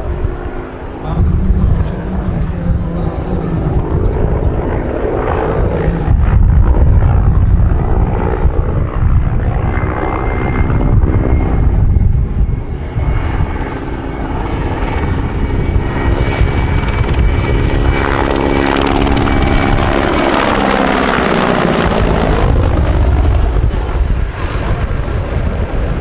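Mil Mi-171S helicopter in flight: the five-blade main rotor chopping over the whine of its twin turboshaft engines, loud and steady throughout. About three-quarters of the way in, a swirling, sweeping tone comes in as it passes low and close.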